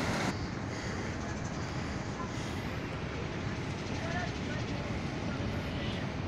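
Steady rumble of heavy surf breaking on a beach in a strong swell, its hiss turning duller a moment in.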